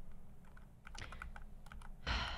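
Faint typing on a computer keyboard: a run of quick, light key clicks starting about a second in, over a low steady hum.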